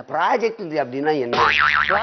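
Men talking in Tamil, and about one and a half seconds in a comic 'boing' sound effect with a quickly wobbling pitch, lasting about half a second, laid over the talk.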